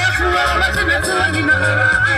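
Live band playing gospel reggae: a held, wavering lead melody rides over a steady pulsing bass.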